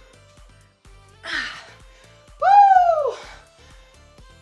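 A woman's breathy exhale, then a loud drawn-out vocal cry that rises and then falls in pitch, an exhausted release of breath at the end of a hard exercise set, over background music with a steady beat.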